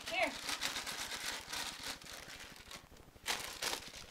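A short call of "Here!", then scratchy rustling and scuffling on the carpet while a ferret is played with, with a louder rustle a little past three seconds in.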